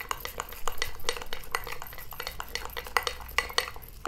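A spoon stirring a thick homemade banana scrub paste in a small glass bowl, the spoon tapping and scraping against the glass in quick, irregular clicks.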